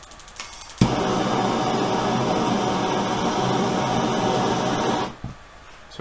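Handheld gas torch flame hissing steadily for about four seconds, starting abruptly with a click a little under a second in and cutting off suddenly just after five seconds.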